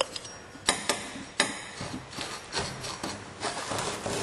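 A metal spatula scraping and tapping gritty tire char (carbon black) out of a dish onto a metal tabletop: a few sharp knocks in the first second and a half, then gritty scraping with light ticks.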